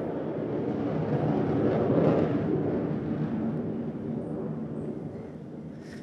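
Rumbling noise of a passing engine, swelling to its loudest about two seconds in and fading away over the next few seconds.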